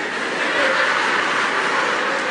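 Live audience applauding, swelling about half a second in and then holding steady.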